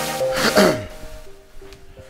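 Background electronic music, with a short noisy burst and a falling sweep about half a second in, after which the music drops to quieter held notes.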